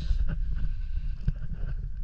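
Water moving around a submerged action camera: a steady low rumble with many small clicks and knocks, and a brief hiss at the start.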